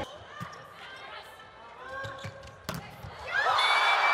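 Volleyball rally in an arena hall: light ball contacts, then one sharp smack of the ball off a block a little under three seconds in. The crowd erupts in loud cheering straight after.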